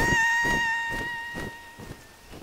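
A long, high, held cry that fades away as it recedes, over a run of soft wing flaps: a cartoon sound effect of a large bird flying off with a screaming character.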